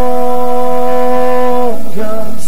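A man singing one long, steady held note in a live acoustic country song; the note breaks off near the end and the singing goes on in shorter notes.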